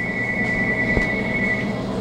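Cordless phone ringing: one steady high electronic tone lasting about two seconds, over a steady low hum, with a short click about a second in.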